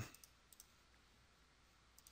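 Near silence, broken by a few faint clicks of a computer mouse.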